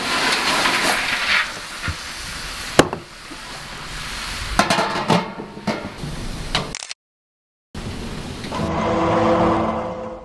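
Water from a garden hose spray nozzle jetting into a galvanised metal incinerator bin to put out the fire inside, a loud steady hiss that eases off after about a second and a half. A sharp knock comes near three seconds, with a few lighter clicks after it; then the sound cuts out briefly and music begins.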